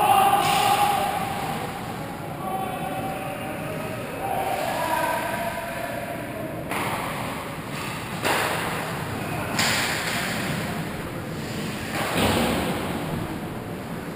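Sounds of ice hockey play in an echoing rink: players' shouting voices over the first five seconds, then four sharp scraping hits a second or two apart from skates and sticks on the ice.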